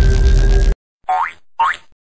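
Loud outro music cuts off suddenly under a second in. Two short cartoon sound effects follow about half a second apart, each sliding upward in pitch.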